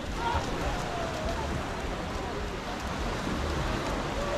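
Steady wind and water noise with a low rumble. Faint distant voices call over it.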